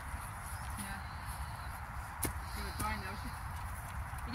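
Faint murmured speech over a steady low outdoor rumble, with one sharp click a little past two seconds in.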